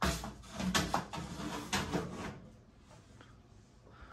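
Knocks, clunks and scraping from a metal electronic instrument's chassis being handled, busiest in the first two seconds and then dying away.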